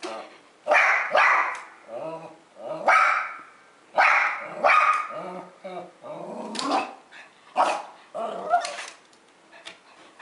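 Small pug–dachshund mix barking repeatedly at a dog on the television screen: about a dozen short barks, roughly one a second.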